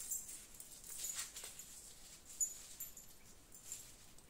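Thin metal chains of a hanging flower pot clinking and jingling lightly as they are handled, in scattered small clicks and tinkles with one sharper clink about two and a half seconds in.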